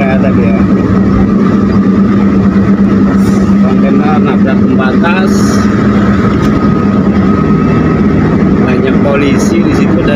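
Steady engine and tyre noise heard from inside a car's cabin cruising at highway speed, with a constant low drone.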